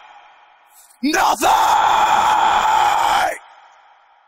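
Isolated heavy-metal lead vocal with no band behind it: a male singer's screamed yell starts suddenly about a second in, is held for about two seconds, and cuts off, leaving a studio reverb tail fading away.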